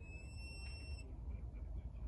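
A shepherd's whistle blown as one steady, high note with overtones, lasting about a second, over wind noise on the microphone. It is typical of a 'lie down' stop command to a working sheepdog.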